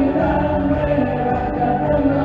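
Live worship band: several voices singing a Spanish worship song together over acoustic guitar, electric guitar and bass, steady throughout.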